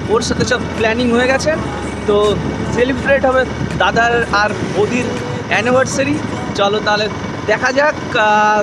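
Voices talking and laughing over a motorbike riding along a road at night, with the bike's running and road noise underneath; a low steady hum drops out about halfway through.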